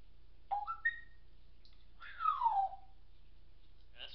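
African grey parrot whistling: a quick run of three short notes stepping up in pitch, then, about a second later, one long whistle sliding down.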